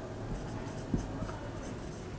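A marker pen writing on a whiteboard: short, faint scratching strokes as the letters are drawn, with a soft knock about halfway through.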